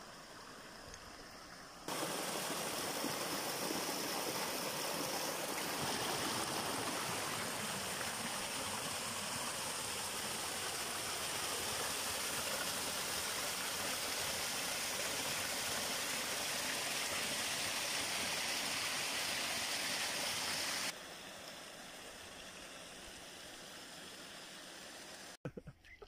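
Water falling over rocks in a small waterfall, a steady loud rushing splash. It cuts in abruptly about two seconds in and drops away just as suddenly about five seconds before the end, leaving a much quieter rushing hiss either side.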